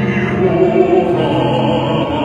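Mixed church choir singing in held notes, with a male voice singing into a microphone at the front.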